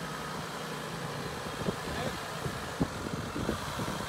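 2021 Jeep Wrangler Rubicon's 3.0-litre V6 EcoDiesel engine running steadily at low crawl speed, with a few sharp knocks, the loudest near three seconds in.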